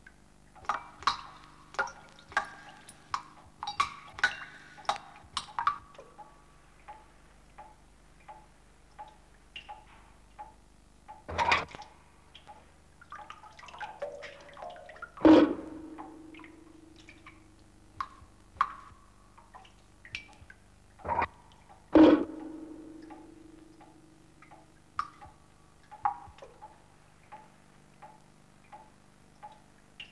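Water from a leaking roof dripping into metal buckets and pans: irregular short plinks at different pitches, with two louder plonks about halfway and two-thirds of the way through that ring on for a moment.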